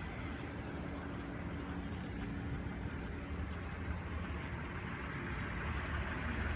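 Steady low rumble of background vehicle noise outdoors, with a faint steady hum through the first half.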